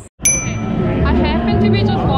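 A single bright bell-like ding, an edited transition chime, about a quarter-second in after a brief dropout, ringing briefly. Music with a voice then comes in and carries on.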